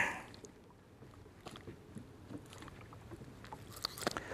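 Faint clicks and taps of a caught smallmouth bass and a fishing rod being handled in a boat, over a quiet open-air background.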